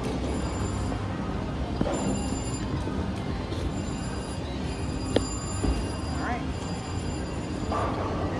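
Casino slot-machine din: steady electronic chimes and bell-like ringing from the machines, mixed with music and background voices, with one sharp click about five seconds in.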